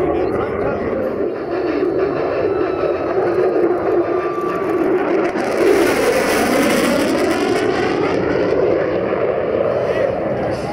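Lockheed Martin F-22 Raptor's twin Pratt & Whitney F119 turbofan jet engines in a flyby. The jet noise builds and turns brighter and harsher as the aircraft passes closest, about six seconds in, with a sweeping, phasing quality that rises and then falls, and then eases off as it moves away.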